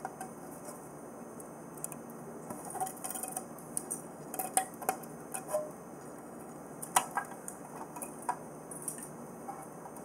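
Handling noises of a clear plastic box frame and a strand of string lights: scattered light clicks and taps, the sharpest about seven seconds in, over a steady low hiss.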